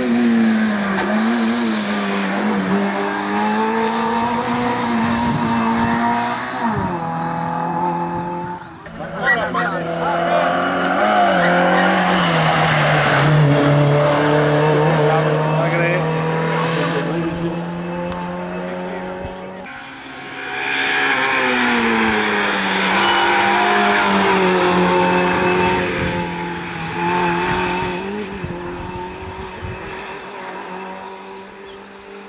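Autobianchi A112 Abarth's small four-cylinder engine revving hard at racing speed as the car climbs past, its pitch rising and falling with gear changes and throttle. The sound breaks off abruptly and starts afresh about 9 s and 20 s in.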